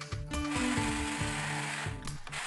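Corded jigsaw running, its reciprocating blade cutting through a wooden board, with background music over it.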